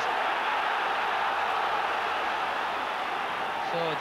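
Large football stadium crowd making a steady, loud noise that holds evenly throughout.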